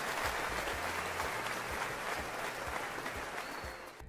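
Audience applause, a steady patter of many claps that gradually fades out near the end.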